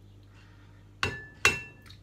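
Two sharp clinks about half a second apart, each leaving a brief ringing tone: a container or utensil knocking against a mixing bowl as flour is put into it.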